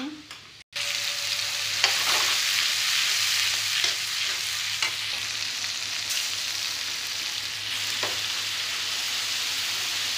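Hot oil sizzling steadily as chopped onions and masala fry in a steel kadhai and pieces fry on an oiled tawa, with a spatula stirring the kadhai. A few light knocks of utensils are heard over the hiss, which starts suddenly just under a second in.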